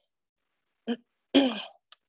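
A woman clearing her throat: a brief sound about a second in, then a louder clearing just after.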